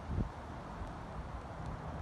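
Outdoor lot ambience with wind buffeting the microphone: a steady rumbling hiss, with one brief low thump about a quarter of a second in.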